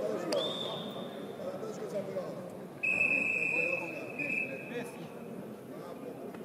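Wrestling referee's whistle: a faint short whistle just after the start, then a loud, steady blast about three seconds in that lasts about a second and a half, stopping the action on the mat. Voices and murmur in the arena run underneath.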